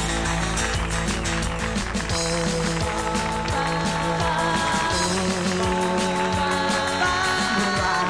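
A live band plays 1950s-style rock and roll: a steady drum beat under electric bass and acoustic guitar, with a man singing held notes from about three seconds in.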